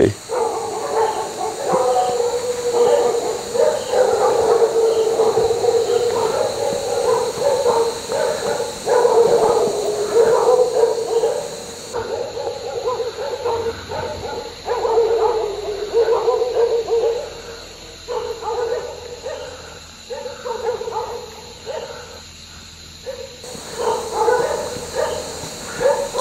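Dogs howling and whining in repeated drawn-out calls that come in bouts, over a steady high-pitched drone.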